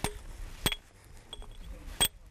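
Stonemason's hammer striking a steel chisel into basalt: three evenly spaced, sharp, ringing metallic taps, the second louder and the third fainter.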